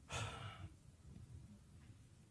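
A man's short breath, a sigh, picked up by his microphone, about half a second long near the start.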